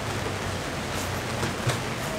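Steady background rumble and hiss with a faint low hum, and a soft bump near the end.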